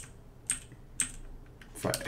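Computer keyboard keystrokes as a terminal command is typed: a few separate sharp key clicks, about half a second apart.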